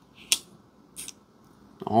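CJRB Scoria folding pocket knife clicking as its flipper tab is pressed to push the blade off the detent: one sharp click about a third of a second in and a softer one about a second in. The blade only almost opens.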